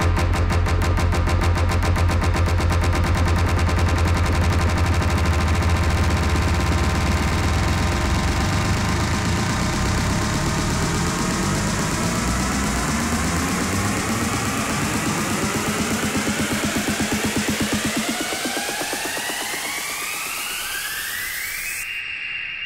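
Electronic dance music mixed live by a DJ, a fast, even pulsing beat over heavy bass. From about halfway the bass thins out while synth sweeps climb in pitch into a build-up, and the bass drops away entirely a few seconds before the end.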